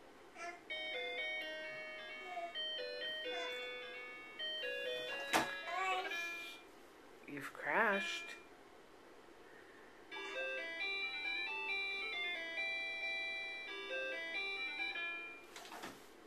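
Electronic toy melody from a ride-on toy car's built-in keyboard, set off by the toddler sitting on its keys: a simple beeping tune that plays in two runs with a pause between. A sharp knock about five seconds in and a short child's vocal squeal in the pause.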